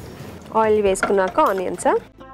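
A woman speaking, from about half a second in.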